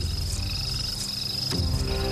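Frogs calling in a night-time ambience over soft, sustained background music, whose notes grow fuller about a second and a half in.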